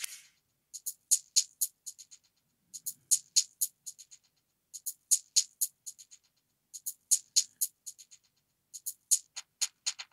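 A bright, high-pitched drum-machine percussion sample playing in a loop through an auto-wah filter effect. Quick runs of ticking hits come with short gaps between them, the pattern repeating about every two seconds.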